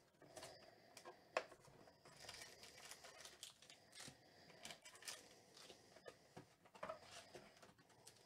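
Faint rustling and crinkling of a cardboard hobby box and foil-wrapped trading card packs being handled as the packs are lifted out, with scattered light clicks and taps, the sharpest about a second and a half in.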